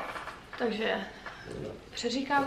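French bulldog whining: two short whimpers, the longer about half a second in and a shorter one about a second later.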